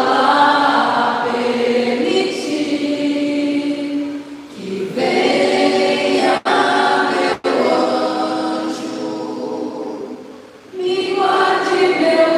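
Women's voices singing an Umbanda ponto cantado together in long held phrases, pausing briefly about four and a half seconds in and again near the end.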